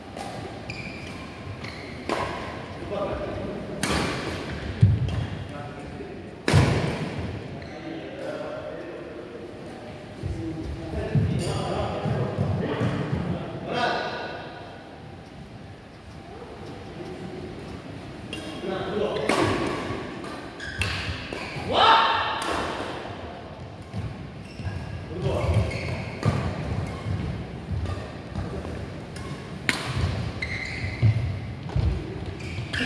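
Badminton play: sharp, irregularly spaced racket hits on the shuttlecock and thuds of feet on the court.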